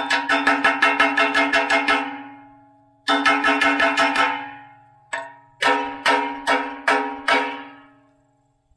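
Steel chipping hammer swung around and striking steel over and over, each strike ringing with the same metallic pitch. It comes in runs: a fast one of about six strikes a second, a second run after a short pause, a lone strike, then slower strikes about three a second near the end.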